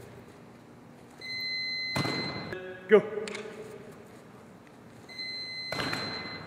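Electronic timing beep of a QB-Tee quarterback training device, set to 1.8 seconds, the average release time for a three-step throw. It is a steady high tone held for about a second, sounding twice, with a thud partway through each beep.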